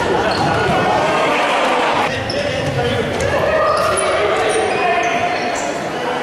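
Indoor futsal play in an echoing sports hall: the ball being kicked and bouncing on the wooden court, shoes squeaking in short high chirps, and players and spectators calling out indistinctly.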